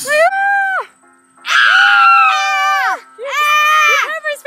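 A girl screaming in three long, high-pitched cries after being sprayed in the face with pepper spray.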